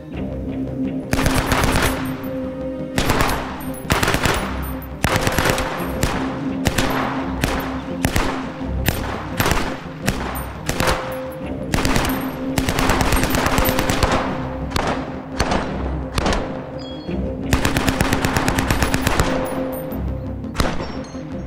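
Carl Gustaf M/45 "Swedish K" open-bolt 9mm submachine gun, an Egyptian Port Said licence copy, firing on full auto in a long string of short bursts of a few rounds each, one after another.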